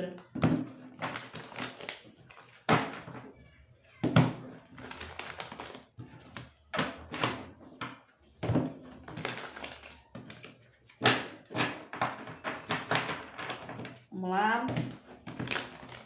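A deck of tarot cards being shuffled by hand: irregular short riffling and snapping bursts of the cards. A brief hummed vocal sound rises in pitch near the end.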